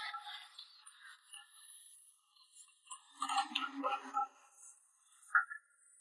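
Cleaver chopping roast goose on a thick wooden chopping block: a few knocks in the middle and one sharp chop near the end, the loudest sound, with background voices.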